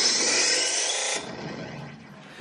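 Radio station jingle sound effect: a loud rising whoosh of noise that cuts off sharply about a second in, leaving a short fading tail.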